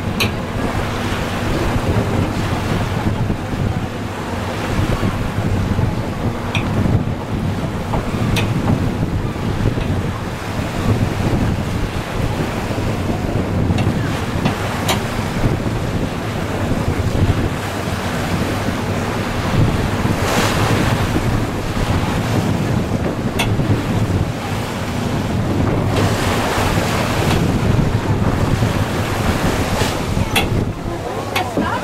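Wind buffeting the microphone over the steady low drone of a passenger boat's engine and the rush of water along the hull as it motors out of the harbour, with a few faint clicks.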